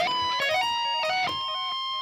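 Electric guitar tapping lick: a quick run of single notes, then one long held high note about a second in. The held note is the flat, wrong note hit in the failed live solo.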